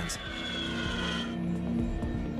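Background music with sustained low tones over the high whine of an A-10 Thunderbolt II's turbofan engines. The whine falls slightly in pitch and fades out a little over a second in.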